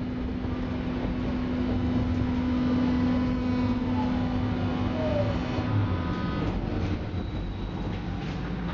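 Berlin U-Bahn F87 train heard from inside the passenger car: a steady motor hum over wheel and rail rumble. Falling whines follow in the second half as the hum fades away, typical of the train slowing down.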